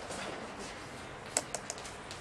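Writing on a lecture board: a few light, sharp taps in the second half, over quiet room noise.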